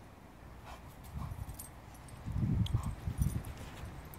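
A dog making faint whines, then a low rumbling growl for about a second past the middle.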